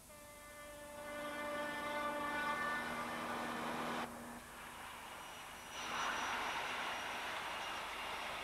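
Train horn sounding one steady held note for about four seconds, followed by the noise of the train running past, which grows louder about six seconds in.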